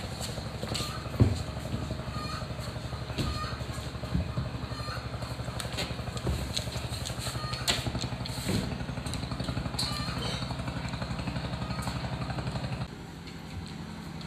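A small engine running steadily with a fast, even pulsing beat, with a few light knocks over it. The engine sound drops away shortly before the end.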